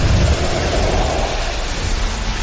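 Animated energy-beam clash sound effect: a loud, steady rushing noise over a deep rumble.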